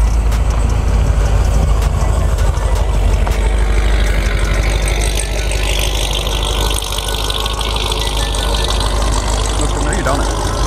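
A car engine running as a car drives off over a gravel lot, with a steady deep rumble throughout and a hiss in the middle. Voices in the background.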